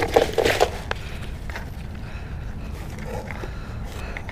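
Rustling and a few light knocks in the first second as a large bass is handled and laid on a cardboard box, then only a steady low rumble with a few faint ticks.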